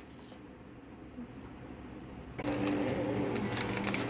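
Faint room tone, then about two and a half seconds in a steady machine hum comes in suddenly, with aluminium foil crinkling as a cooked foil packet is handled.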